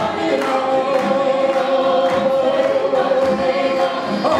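Armenian folk choir singing, with one long note held through most of the stretch.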